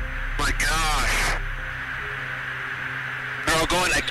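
Pilots' cockpit radio audio with a steady hiss and hum on the line, a short garbled voice burst about half a second in, and radio voices starting again near the end.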